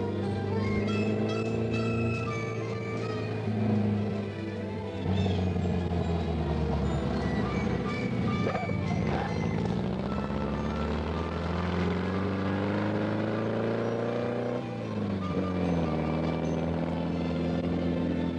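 VW Beetle-based dune buggy's air-cooled flat-four engine running as the buggy drives off, its pitch climbing and then dropping sharply about fifteen seconds in, under background music.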